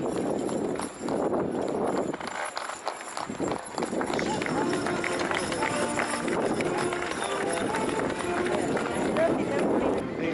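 Heavy draught horse teams drawing wagons: hoofbeats and wagon noise mixed with crowd voices throughout.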